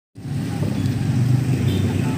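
Steady low rumble of a motor vehicle engine running close by, beginning abruptly just after the start.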